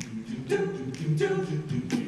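Male a cappella group singing in close harmony over sustained low bass notes, with sharp percussive vocal hits marking a beat.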